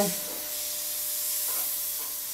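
Gravity-feed airbrush spraying black paint, a steady hiss of air through the nozzle, with a faint steady hum beneath it.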